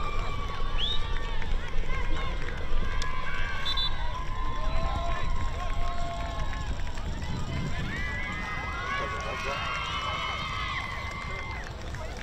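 Distant voices of spectators and players, several calling and talking over one another with no words made out, over a steady low background noise of an open field.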